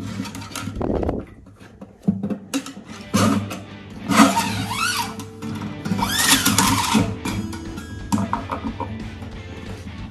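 Background music with steady sustained tones, over scraping and swishing as a wound steel guitar string is pulled through the bridge and handled, in several noisy strokes from about two to seven seconds in.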